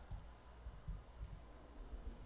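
Faint, scattered computer mouse clicks with a few soft low knocks on the desk, as a value is being set in a program.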